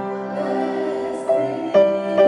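Upright piano playing sustained chords, its hammers striking the strings, while two women sing together. New chords are struck twice near the end.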